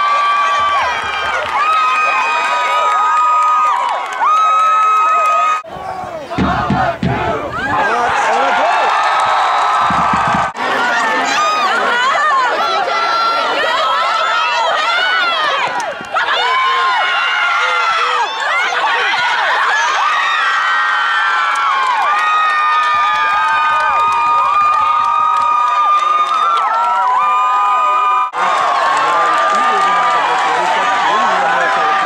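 Soccer crowd cheering and shouting, with many long yells over one another, as a goal is scored. The cheering drops out briefly at a few edits.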